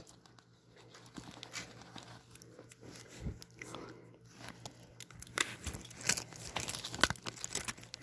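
Rustling of a fabric first-aid bag and clicking of its plastic strap buckles as one hand fumbles to clip them shut. Scattered sharp clicks, more of them in the second half.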